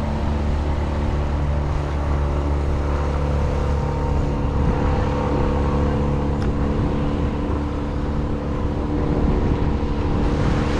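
Steady low machine hum of the dam's hydroelectric generators, with several held tones that do not change, over the rush of turbulent tailwater.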